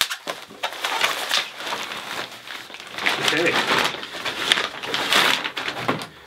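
Plastic packaging and bubble wrap rustling and crinkling in irregular bursts as a cymbal is pulled free of it.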